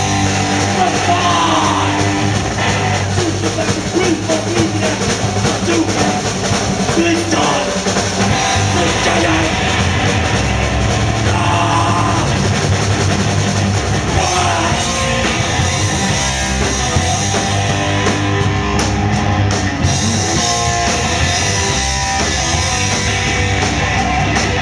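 Hardcore punk band playing live: distorted electric guitar, bass and a drum kit, loud and driving, with vocals into the microphone at times.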